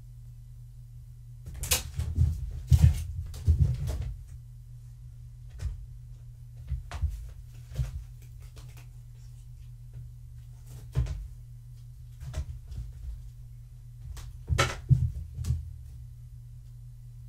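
Irregular knocks and bumps that come in small clusters, the loudest a few seconds in and again near the end, over a steady low hum.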